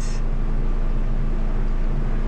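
Steady running noise inside a car: an even rush with a low, unchanging hum.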